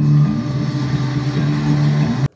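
Bus engine running with a steady low drone, played from a video on a wall-mounted TV and soundbar as the volume is turned up.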